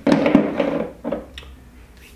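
Car parts being handled and set down on a folding table: a rustling clatter through the first second, then a few light knocks.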